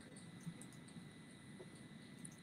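Near silence: faint steady background hiss with a faint high whine, and one small tick about half a second in.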